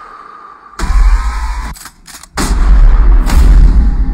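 Trailer sound design: two deep, booming impact hits over music, one about a second in and a bigger, longer one about two and a half seconds in. The sound drops out briefly just before the second hit.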